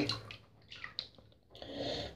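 Faint bath-water sounds from a hand in the tub: a few small drips about a second in, then a soft swish of water near the end.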